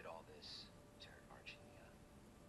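Near silence, with faint TV-show dialogue coming through a tablet's small speaker.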